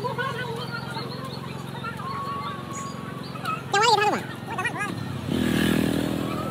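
People's voices talking and calling out, with one louder call about four seconds in, over a steady low engine hum. A louder rushing noise comes in near the end.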